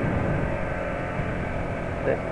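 Yamaha XTZ 125 motorcycle cruising steadily along a highway, its single-cylinder engine running under a constant rush of wind and road noise on the onboard microphone.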